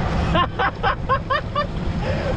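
Wind buffeting the microphone in a steady low rumble, with a man laughing in about six short bursts starting about half a second in.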